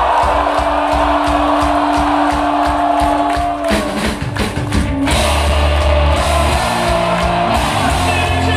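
Live punk rock band playing loud: a steady drum-kit beat under one long held note, with the bass and chords coming in from about four seconds in and the full band playing from about five seconds.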